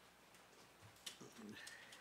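Near silence: room tone, with a faint click about a second in and a few soft, brief noises after it.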